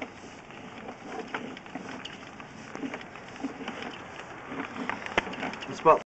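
Faint, irregular clicking and rustling from a sewer inspection camera's push cable being pulled back onto its reel, with a few sharper clicks near the end.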